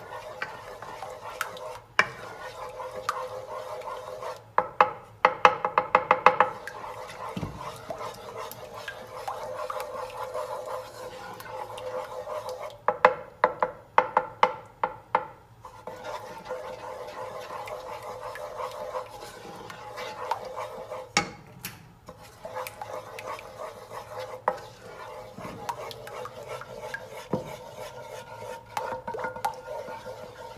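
Wooden spoon stirring a thick white sauce in a metal saucepan, scraping and knocking against the pan, with two runs of rapid taps about five and thirteen seconds in. A steady tone sits underneath throughout.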